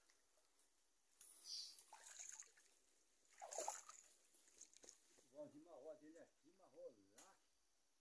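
Near silence, with faint squelching steps on wet mud in the first half and a faint voice about five to seven seconds in.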